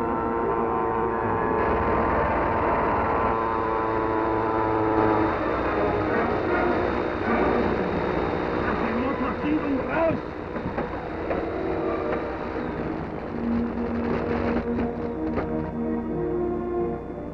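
Dramatic orchestral film score mixed over the drone of aircraft engines, with a run of sharp cracks near the end.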